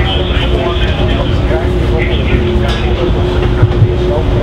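Shipboard machinery on deck at sea: a loud, steady low rumble with a constant mid-pitched hum running through it.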